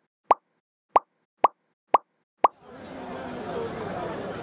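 Pop sound effects, five identical short pops about half a second apart, each dropping quickly in pitch, as on-screen comments appear; then the murmur of a crowd's chatter swells in.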